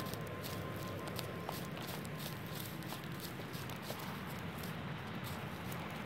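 Footsteps walking through dry fallen leaves: a steady run of small crunches and rustles.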